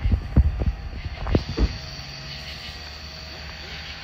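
Steady low drone of approaching diesel locomotives (EMD SD60E units), with several low thumps from the camera being handled in the first second and a half.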